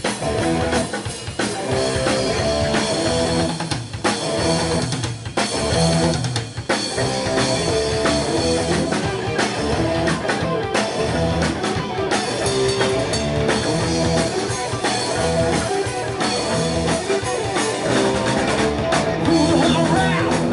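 Live heavy metal band playing loud and steady: distorted electric guitar riffing over bass guitar and a rock drum kit.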